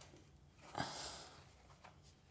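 Faint rustle, with a small click about a second in, as gloved hands grip and turn the nut of a braided steel water hose at the wall valve.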